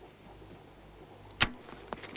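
A single sharp click about one and a half seconds in, followed by a fainter click near the end, over a quiet steady background.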